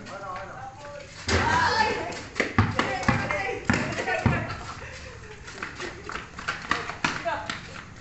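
Players shouting and calling out to each other, loudest in the first half, with a basketball bouncing a few times on the concrete court around the middle.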